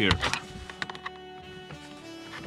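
Background instrumental music with a few light, sharp plastic clicks as a plastic trim removal tool is worked into the dashboard trim.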